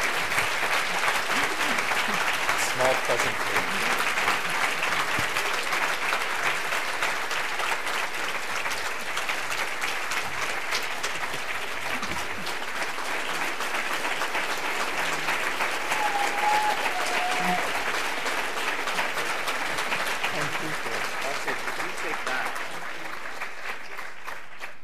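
An audience applauding, dense steady clapping that thins and fades near the end.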